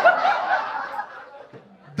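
Audience laughing, a mass of many overlapping voices that dies away over about a second and a half.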